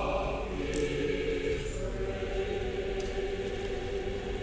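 Church choir singing, settling about half a second in into one long held chord.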